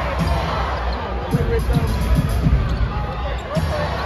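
A basketball being dribbled on a hardwood court, a run of short thumps in the middle, over the constant noise of an arena crowd with voices.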